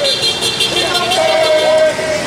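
Voices of street marchers singing a chant together, with city traffic noise underneath.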